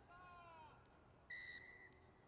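A referee's whistle blows one short, steady blast of about half a second, faint at a distance, shortly after a distant shout from a player.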